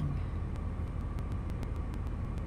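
Steady low background rumble in a pause between spoken phrases.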